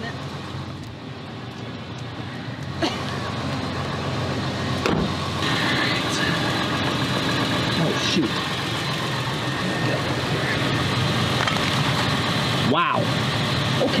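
A vehicle engine running steadily, getting louder about three seconds in and again about five seconds in.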